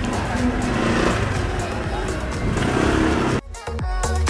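Busy street ambience with traffic and voices in the background. A little over three seconds in it cuts off suddenly, and electronic dance music with a steady beat starts.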